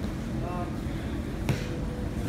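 Low rumble and murmur of voices in a gym where two grapplers are rolling on the mat. A brief voice sounds about half a second in, and a single sharp knock comes about a second and a half in.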